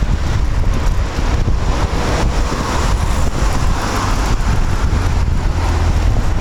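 Steady road noise from a moving vehicle in traffic: a continuous low rumble with wind buffeting the microphone.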